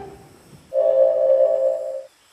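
Cartoon sound-effect music: a single steady synthesizer tone comes in just under a second in, is held, and cuts off suddenly. It follows the fading tail of the previous impact.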